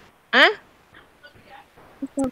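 A single short, high vocal cry about a third of a second in, sweeping sharply upward in pitch, followed by faint scattered sounds.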